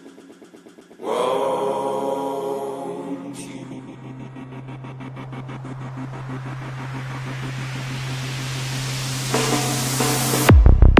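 Psytrance remix build-up. After about a second of quiet, a held synth chord swells in over a steady low drone, and a rising noise sweep grows louder and brighter toward the end.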